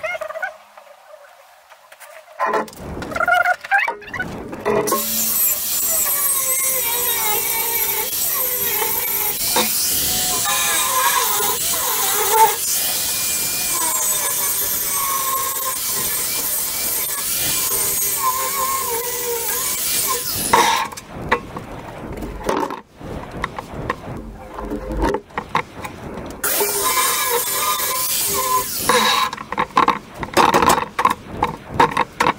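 Angle grinder cutting into the edge of a steel plate, grinding off excess weld, a loud hissing whine whose pitch wavers as it is pressed into the metal. It runs for about fifteen seconds, stops, and comes back for a short second pass near the end.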